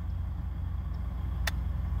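Steady low engine rumble, with one sharp click about one and a half seconds in.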